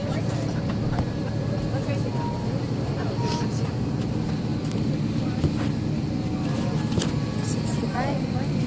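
Steady low drone of an airliner cabin, with faint voices murmuring over it and a few light clicks.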